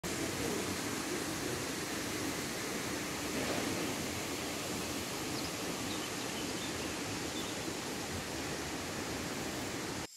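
Steady, even rushing noise of outdoor ambience, with no distinct events.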